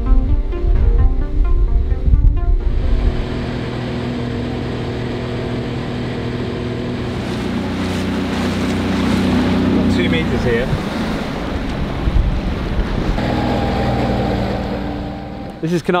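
Background music that stops about two and a half seconds in, giving way to a small speedboat's engine running steadily under way, with rushing water and wind.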